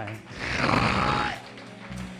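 A preacher's sharp, breathy exhale into the microphone, a rush of breath lasting about a second, over soft sustained backing-music notes.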